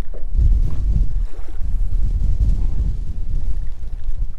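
Wind buffeting the microphone, a loud, uneven low rumble with no steady pitch.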